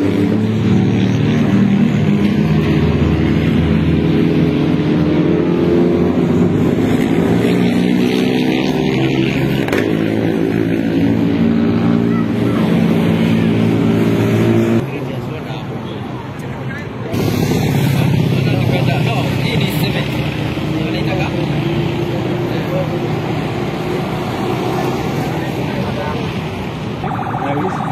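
Rally cars driving past at speed, engines revving up and down through gear changes, with spectators' voices. The sound dips briefly just past halfway, then the engines return.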